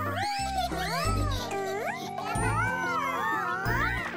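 Children's cartoon background music with a bass line, under high, wordless cartoon voices that swoop up and down in pitch, ending in one long rising glide.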